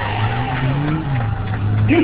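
Street traffic: a vehicle engine rising and then falling in pitch, with the tail of a siren fading out about one and a half seconds in. A man laughs at the very end.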